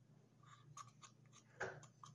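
Quiet, with a few faint clicks and taps of a wooden chopstick working persimmon paste out of a plastic bag into a small plastic bottle, and one short louder noise near the end.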